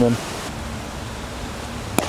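Steady outdoor background noise, an even hiss with no clear single source, ending in one sharp click.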